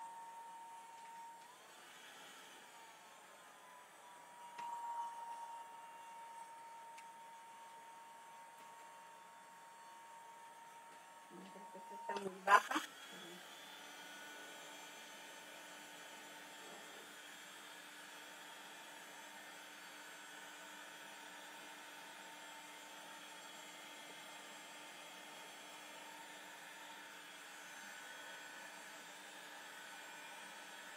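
Electric heat gun running on low power over wet paint: a faint, steady whine with light fan hiss. A short loud knock about twelve seconds in, after which the whine carries on at a different pitch.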